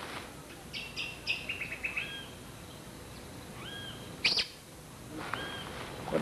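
Birds calling: a quick run of high chirps about a second in, then a few separate whistled calls spaced out over the following seconds.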